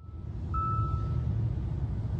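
Steady low rumble of a car driving in town traffic, heard from inside the cabin. A faint thin high tone sounds about half a second in and fades before the middle.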